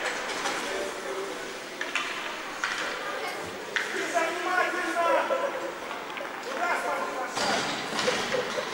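Ice arena ambience during a stoppage in play: distant voices of players and spectators echoing around the hall.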